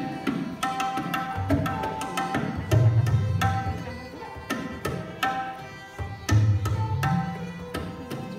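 Tabla solo in rupak taal, a seven-beat cycle: crisp treble-drum strokes over deep bass-drum strokes that swell and bend upward in pitch. A sarangi bows the repeating lehra melody behind it.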